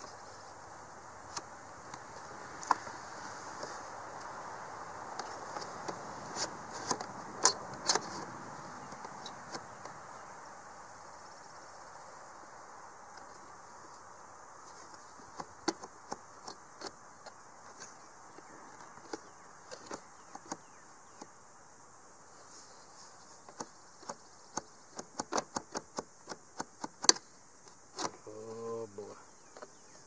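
Irregular sharp metal clicks and taps from pliers and hands working the bent metal hinge tabs of an RV roof vent lid, bunched in clusters, over a steady high insect buzz.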